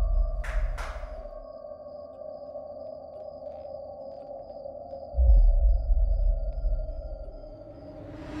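Horror-film score: a steady, eerie held drone tone, with two quick sharp claps about half a second in and a deep low boom about five seconds in.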